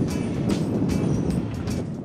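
Steady, fairly loud rushing noise of wind on the microphone, with faint background music underneath; the noise thins a little near the end.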